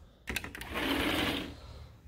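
A sliding door rolling along its track: a couple of short clicks, then a steady rolling rattle lasting about a second.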